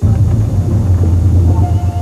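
A loud, deep rumble that starts suddenly and holds steady for about two seconds.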